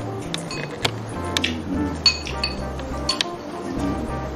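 Wood fire crackling with irregular sharp pops, heard over soft background music with slow, low notes.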